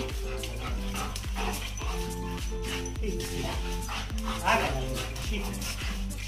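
German shepherd giving short, high-pitched excited whines as it greets its owner, the loudest about four and a half seconds in, over background music with a steady beat.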